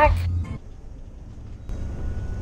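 Low, steady road and engine rumble heard from inside a moving vehicle. About a second and a half in it changes to the louder, noisier cab sound of a driving Class A motorhome.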